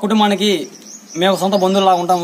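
A man's voice speaking, with a short pause in the middle.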